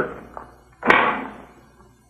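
A foot lever stepped on, setting off a single sharp bang about a second in that dies away over about half a second.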